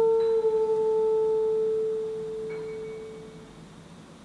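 Alto saxophone holding a single soft, nearly pure note that fades away to nothing over about three and a half seconds.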